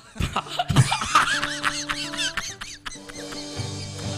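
Laughter, in short high-pitched peals, over music from the backing band; a steady low note from the music comes in near the end.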